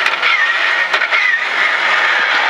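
Rally car engine running hard, heard from inside the stripped cabin, with a steady note, road and tyre noise, and a few sharp clicks.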